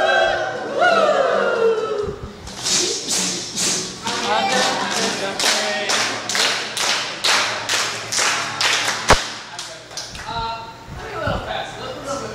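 A group of people calling out together, then clapping in a quick steady rhythm of about three claps a second, with one sharp loud thud about nine seconds in. Voices come back near the end.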